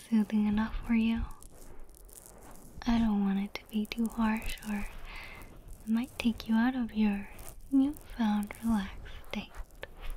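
A woman's voice speaking softly and close to the microphone, in short phrases with brief pauses.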